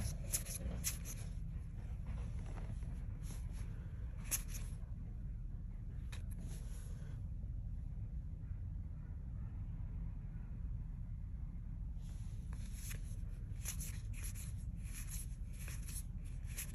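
Trading cards being slid one behind another in the hand: soft scrapes of card on card, a few at the start, one or two in the middle, a quiet gap of several seconds, then a run of them near the end.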